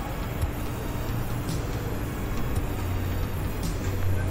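Steady outdoor rumble of sandstorm wind and distant road traffic, a low even noise with no distinct events.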